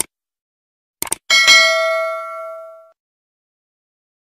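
Subscribe-button animation sound effect: a mouse click at the start, a quick double click about a second in, then one bell ding that rings out and fades over about a second and a half.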